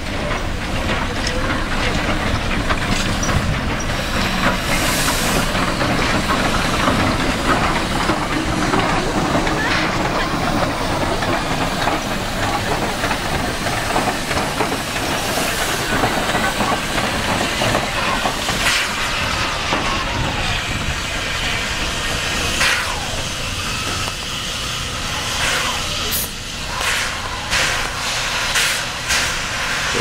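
Steam locomotive hauling passenger coaches slowly past, hissing steam and clanking, with a run of louder bursts over the last few seconds as the coaches roll by.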